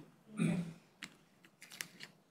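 A voice says a quick "okay", then a few sharp, scattered clicks: one about a second in and a small cluster of three near the end.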